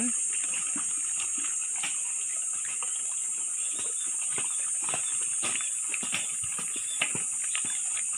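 A herd of native pigs feeding on chopped banana leaves and banana bark: short irregular grunts, chewing and the rustle of leaves, over a steady high-pitched hiss.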